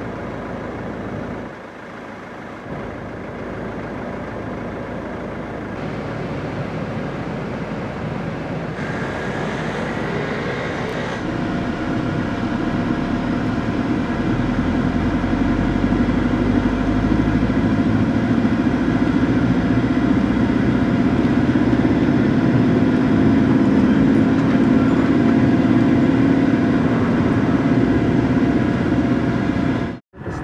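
Car driving, with engine and road noise heard from inside the cabin, a steady low rumble and hum that grows gradually louder.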